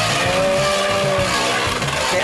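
Two Beyblade spinning tops whirring and scraping on the plastic floor of a Beyblade stadium, one circling the rim while the other spins in the centre, with a steady, wavering whine.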